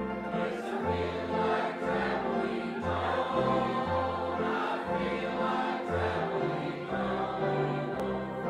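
Gospel vocal group singing in harmony over an accompaniment, with a bass line stepping from note to note about once a second.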